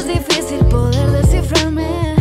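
A woman singing in Spanish over an R&B-pop backing track with a deep bass line and a steady drum beat.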